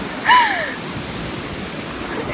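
Ocean surf washing up the beach in the shallows, a steady rush of foaming water. A brief falling, voice-like cry sounds about a third of a second in.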